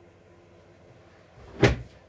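A single sharp thump about one and a half seconds in, with a brief rustle just before it.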